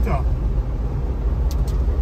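Trabant 601's two-cylinder two-stroke engine running steadily under way, heard inside the cabin as a low drone mixed with road noise.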